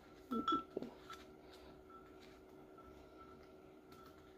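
Quiet room with a short murmur from a woman's voice about half a second in, then a few faint clicks of handling as a light bulb is fitted into a ceramic wax warmer.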